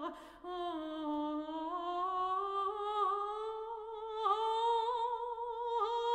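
Operatic soprano singing long, held notes with a wide vibrato, the melody climbing slowly higher, with a brief break in the sound just after the start.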